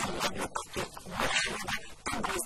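A woman's voice speaking, with a strong hiss over it.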